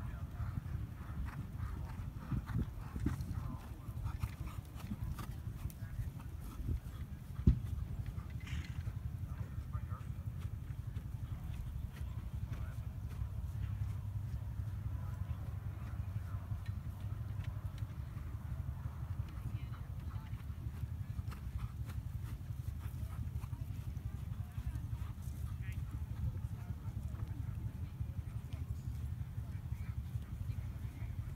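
Faint hoofbeats of a dressage horse working on a sand arena, under a steady low rumble, with one sharp knock about seven and a half seconds in.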